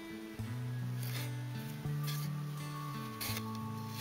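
Background music of held notes that change pitch, with two short rustles of a cotton T-shirt being handled, about a second in and again near the end.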